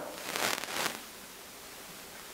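A brief rustle lasting under a second, then faint room tone.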